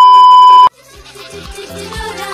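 Loud, steady high-pitched test-tone beep of a TV colour-bars screen, cutting off suddenly under a second in, followed by music with a beat.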